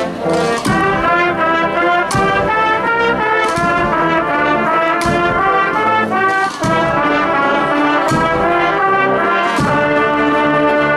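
Agrupación musical (a Spanish processional band of trumpets, trombones and tubas with percussion) playing a march live outdoors. Sustained brass chords carry the melody, with strong percussion strikes about every second and a half.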